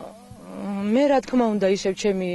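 A person speaking in Georgian, drawing out one long vowel that rises and falls in pitch about a second in, over a steady low hum.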